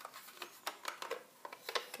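A plastic ink pad case being handled and squeezed shut to press ink up onto its lid, giving a scatter of faint, light clicks and taps.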